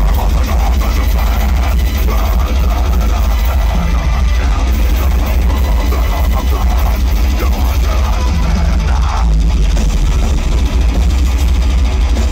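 Deathcore band playing live through a large festival PA: loud, dense distorted guitars and drums with a deep, booming low end, recorded from within the crowd.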